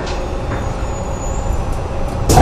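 Steady running noise of the rubber-tyred automated people-mover tram heard from inside its front car: a continuous low rumble and rolling noise as it travels along the guideway.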